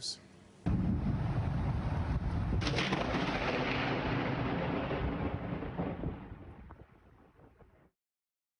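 Thunder rumbling loud and low. It comes in suddenly about half a second in, rolls on steadily for several seconds, then dies away over the last two seconds.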